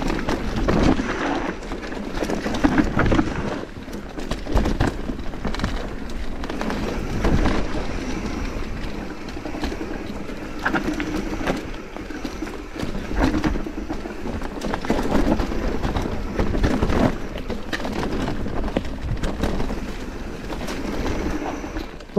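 Mountain bike riding down a dirt singletrack: a steady rush of tyres rolling over packed dirt and dry leaves, with frequent clicks and rattles from the bike over bumps.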